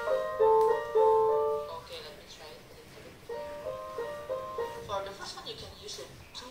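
Piano notes heard over a video call: a short phrase of single notes, the two loudest struck about half a second and a second in and left to ring down, then a softer run of notes from about three to five seconds in.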